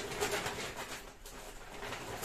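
Rustling of a shopping bag as items are rummaged through and lifted out, with a low steady tone underneath in the first half.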